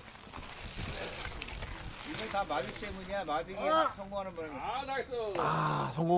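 Men's voices talking and calling out, the words unclear. For the first two seconds or so there is a rustling, rattling noise.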